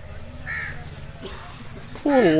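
A bird calls once, briefly, about half a second in, over a low steady hum.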